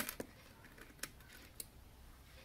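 Small sharp clicks of steel tweezers on a plastic movement holder as it is prised out of a watch case: a louder click at the start, another just after, then two fainter ones about a second and a second and a half in.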